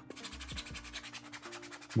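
Coarse 80-grit sandpaper rubbed by hand over a 3D-printed plastic helmet, a quiet repeated scratching as the print's layer lines are sanded down.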